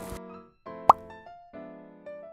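Light keyboard background music for the outro begins about half a second in, with evenly spaced notes. Just before the one-second mark comes a short, loud pop sound effect that swoops upward in pitch.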